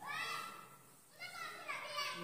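A child's high-pitched voice calling out twice in quick succession, the first call short and the second running longer.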